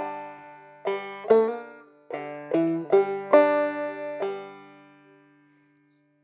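Open-back banjo playing a short phrase of plucked single notes over a ringing open-string drone. After the last note, a little past four seconds in, the strings ring on and fade out.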